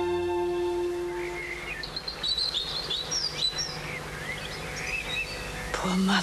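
Orchestral theme music holding its last chord and fading out in the first second or so, then birds chirping and twittering over a faint low hum.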